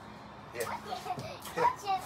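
Speech only: a few short words from an adult, with a child's voice.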